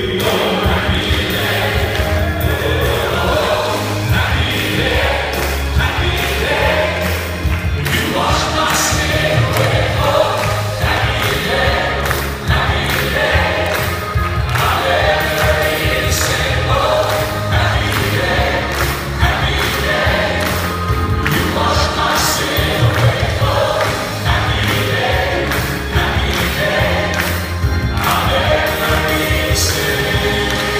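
Live gospel music: a male vocal quartet singing with a large choir behind them and grand piano accompaniment, over a steady beat.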